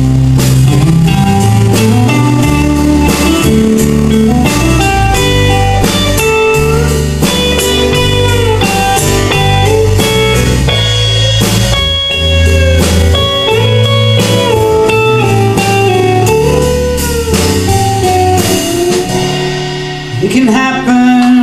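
Instrumental break of a live country band: a lead electric guitar plays a solo with bent and held notes over strummed acoustic guitar and a drum kit.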